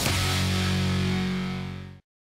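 Short music sting from a broadcast bumper: one held chord that fades out near the end.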